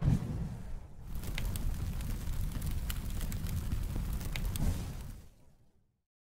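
Logo intro sound effect: a low rumble with scattered sharp crackles that starts suddenly and fades out about five seconds in.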